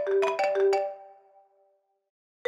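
Mobile phone ringtone: a quick melody of bright, struck notes, the last ones ringing on and fading away about a second and a half in.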